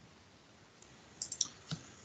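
A few short, faint clicks over low hiss: a quick cluster a little after a second in and one more near the end.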